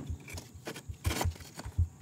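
A few dull knocks of stone against stone, about three in two seconds, as a flat stone is worked into place in a dry-stack wall.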